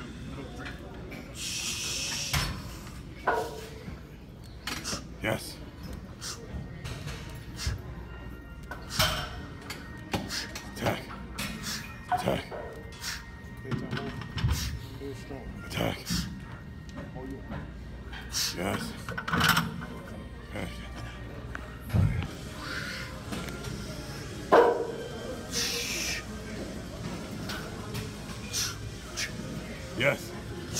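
Gym ambience: background music and voices, with scattered knocks and clanks from barbell and gym equipment during a bench-press set. Two longer hissing bursts, one near the start and one about 25 seconds in.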